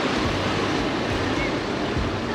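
Wind buffeting the microphone: a steady rushing noise with a fluttering low rumble.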